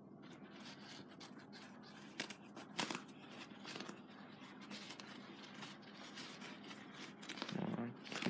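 Paper towel being torn from a roll and unfolded by hand: a soft papery rustle broken by short, sharp tearing snaps, the sharpest a little over two and nearly three seconds in.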